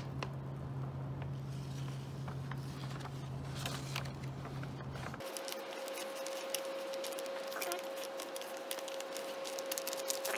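Clear plastic vacuum-sealer bag crinkling and rustling with many small crackles as gloved hands slide a plate inside and smooth the bag over it. A steady low hum underneath stops abruptly about halfway through, and a faint steady higher tone takes its place.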